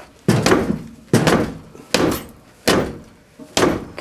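A shoe kicking a Ford Escort ZX2's front tyre five times, a dull thud about every 0.8 seconds, to knock loose a wheel that is stuck on.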